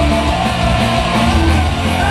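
Live punk rock band playing loud and steady: electric guitars, bass guitar and drums.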